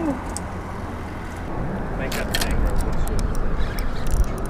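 Steady wind and open-water noise on a small boat, with a low rumble that grows in the second half. A quick run of sharp clicks comes about two seconds in.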